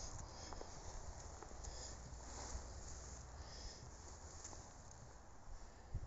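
Faint footsteps in fresh snow over a low steady rumble.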